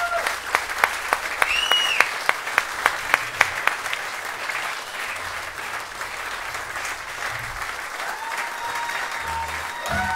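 Applause from a small audience of about thirty, with a run of sharp, evenly spaced claps close by, about three a second, for the first few seconds. It thins to softer scattered clapping after about four seconds.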